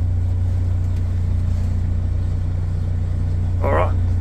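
Steady low drone of the Liebherr LTM1090 carrier's diesel engine idling, heard from inside the cab.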